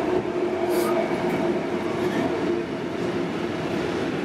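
Container freight train rolling through the station: a steady rail noise with a held, steady tone running under it.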